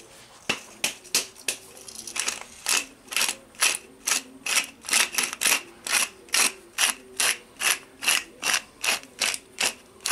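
Wooden pepper mill being twisted to grind pepper, its grinder making short ratcheting crunches: a few scattered strokes at first, then a steady run of about two a second from a couple of seconds in.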